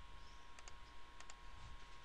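Faint computer mouse button clicks: two quick double-clicks about half a second apart.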